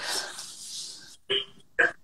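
A man's voice breaking up over a poor video-call connection. A breathy rush of noise is followed by a few short, clipped scraps of voice, each cut off by dead-silent dropouts.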